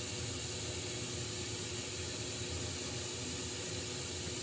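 Glassblowing bench torch burning with a steady hiss while borosilicate tubing is heated and rolled in the flame.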